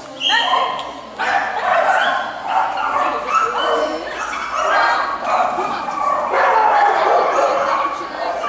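A small dog barking and yipping repeatedly as it runs, mixed with a person's calls.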